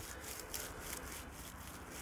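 Faint, scratchy rustling of a metal detector's search coil brushing back and forth over dry straw stubble.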